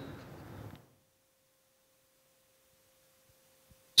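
Near silence: room noise fading out in the first second, then only a faint steady tone until a man's voice begins at the very end.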